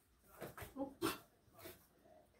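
Shar-Pei dog making a few short vocal sounds, clustered about half a second to a second in, with one more shortly before the end.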